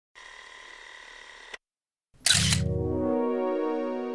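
Logo intro sting: a steady whir lasts about a second and a half and ends in a click. After a short gap comes a sharp, loud hit with a low rumble under it, opening into a sustained musical chord that slowly fades.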